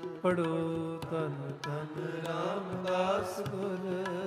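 Sikh shabad kirtan: a ragi singing a drawn-out, gliding vocal line without clear words over sustained harmonium notes, with light tabla strokes keeping time.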